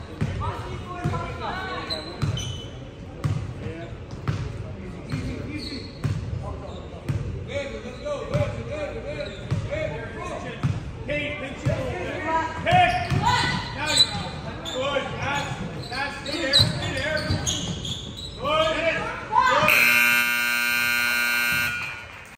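A basketball bouncing on a hardwood gym floor, with players and spectators calling out. Near the end the gym's scoreboard buzzer gives one long, steady blare of a little over two seconds, the loudest sound of all.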